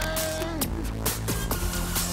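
Live electronic music played on keyboard synthesizers: a steady beat of about three hits a second over a sustained bass, with a synth tone that slides down in pitch about halfway through.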